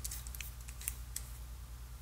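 Small metallic clicks and scrapes of a miniature screw-base bulb being threaded into the brass socket of a hand-powered dynamo flashlight: a few quick clicks in the first second or so, then only a steady low hum.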